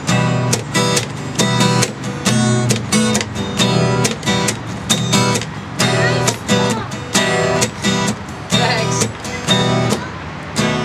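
Acoustic guitar strummed in a steady down-up rhythm, with percussive palm-muted chucks struck between the ringing chords.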